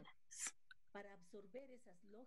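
Near silence in a pause between phrases, with a faint voice speaking softly underneath in the second half.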